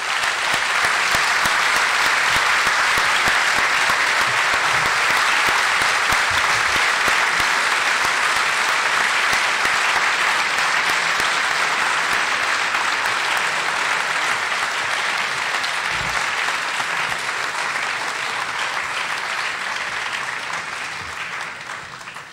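Audience applauding steadily for about twenty seconds, thinning out slightly near the end.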